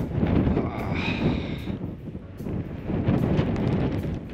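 Strong wind gusting across the camera's microphone, an uneven low rush that rises and falls.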